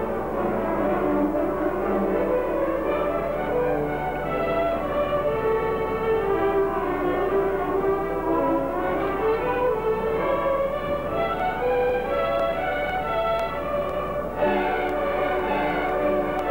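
Student string ensemble of violins playing a classical piece, several parts moving together in held notes; the music grows abruptly louder about fourteen seconds in.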